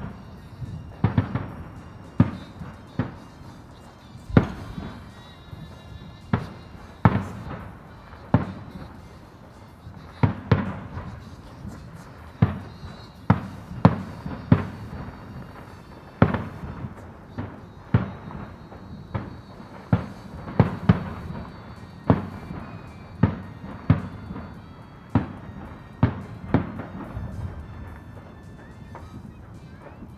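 Aerial fireworks bursting in a continuous barrage, a sharp bang roughly every second, sometimes two close together, each followed by a short rumbling tail.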